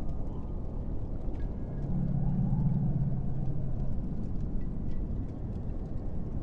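Low, steady rumbling ambient drone, with a deeper hum swelling in about two seconds in and fading out about two seconds later.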